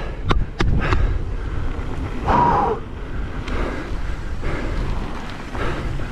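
Mountain bike rolling down a dusty dirt flow trail: a steady rumble of tyres on dirt and wind on the onboard camera's microphone, with a few sharp rattling clicks in the first second. About two and a half seconds in comes a brief voice-like hum from the rider.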